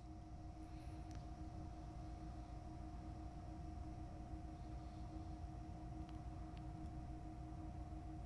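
Faint room tone with a steady hum of two held tones over a low rumble.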